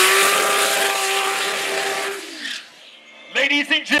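Drag car's engine held at steady high revs while the rear tyres spin in a smoky burnout, with a loud hiss of tyre noise over it; a little over two seconds in the revs drop away and the engine falls quiet.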